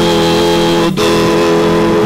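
Two men's voices holding the last note of a sung line in harmony over strummed acoustic guitars, a Brazilian caipira-style duet.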